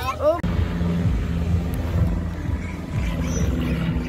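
Small ride boat's motor running with a steady low hum, heard from on board.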